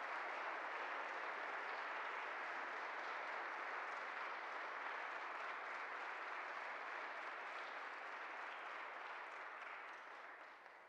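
Audience applauding steadily, tapering off toward the end.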